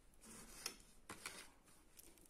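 Near silence with a few faint, soft clicks and rustles from a steel crochet hook pulling cotton yarn through the edge of the work.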